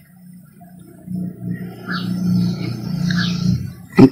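A low, steady hum that grows louder about a second in and stops shortly before the end.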